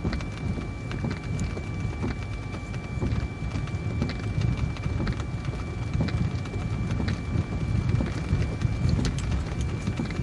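Vehicle driving through falling snow at night, heard from inside: a steady low road rumble with irregular light ticks against the glass and a faint steady high tone.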